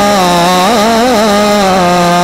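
A man singing a naat without words: one long held note that falls slightly in pitch, with a quick wavering ornament about a second in.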